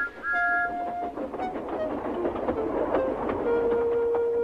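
Steam engine whistle giving two short two-note blasts, followed by hissing and rail noise under the show's music, with a long held note coming in near the end.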